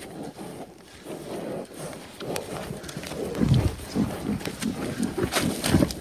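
Two yaks fighting head to head: low, heavy sounds from the animals with scuffs and sharp knocks of hooves and horns. The sounds are irregular and grow louder about three seconds in.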